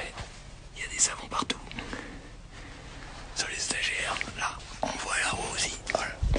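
A man whispering, breathy and too soft for the words to be made out, with a couple of small clicks about a second in.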